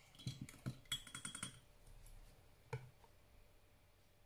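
Paintbrush being swished and tapped against the inside of a glass water jar while it is rinsed: a quick run of light clinks with a faint glassy ring for about a second and a half, then one more tap.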